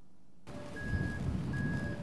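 A vehicle's reversing alarm beeping twice over engine rumble and site noise, starting about half a second in.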